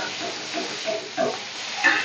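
Sliced onions sizzling in hot oil in a wok while a spatula stirs them, with irregular short stirring and scraping sounds over the frying hiss and a sharper scrape near the end.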